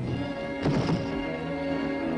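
Dramatic orchestral film score with sustained chords, cut across by a heavy thud a little over half a second in.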